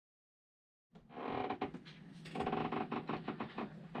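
Creaking and squeaking of a sailboat rocking in stormy weather, mixed with a few light knocks, starting about a second in.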